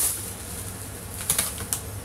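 A boxed product and its plastic wrapping being handled, with light rustling and a few sharp clicks, the clearest about halfway through and again shortly after.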